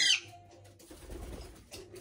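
A pet parrot's loud, shrill squawk that breaks off about a quarter second in, then only a faint low rumble with a couple of light clicks.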